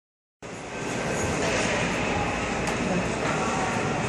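Steady din of an indoor ice rink with faint chatter of voices in it, starting abruptly just after the beginning.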